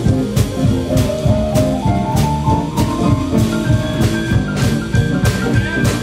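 Live jump blues band playing an instrumental passage: a drum kit keeps a steady beat, about one hit every 0.6 seconds, while a stage keyboard plays, with held higher notes coming in during the second half.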